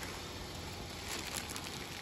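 Clear plastic packaging rustling and crinkling as a bagged automatic-transmission filter is picked up and handled, over a steady low hum.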